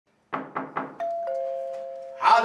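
Three quick knocks on a wooden door, then a ding-dong doorbell about a second in: a higher chime note followed by a lower one that rings on.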